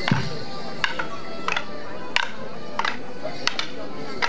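Morris dancers' wooden sticks clacking together in time with the dance, a sharp crack about every half to two-thirds of a second, over steady accompanying folk music.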